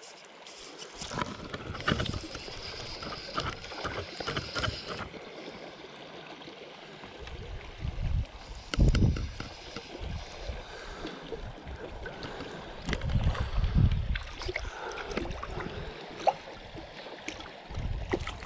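Shallow small stream running over stones, with a few louder low rushes and bumps about two, nine and fourteen seconds in.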